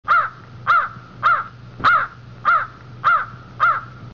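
A bird calling seven times in an even series, a little under two calls a second, each call rising and falling in pitch. The series cuts off just after the last call.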